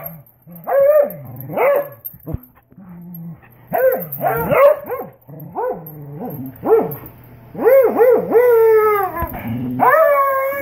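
Dogs vocalising in rough play over a rope toy: a string of high-pitched, whining barks and yips that rise and fall in pitch, the longest one near the end sliding down.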